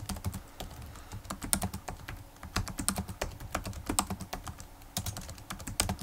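Computer keyboard typing: quick runs of keystrokes as a short command and Enter are typed again and again.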